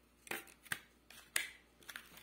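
Banknotes and a clear plastic note holder being handled: four or five short, crisp rustling clicks, the loudest about one and a half seconds in.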